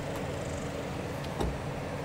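Chevrolet Silverado ZR2 Bison pickup creeping down a rocky slope in four-low: a steady low engine and drivetrain rumble with small clicks from the tyres on rock and one low thump about a second and a half in.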